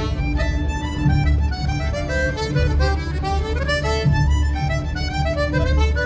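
Live fiddle and accordion playing a melody together, over a steady pulsing bass.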